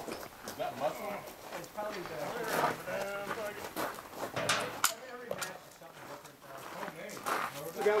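Indistinct conversation among several people, with a few small sharp clicks about halfway through.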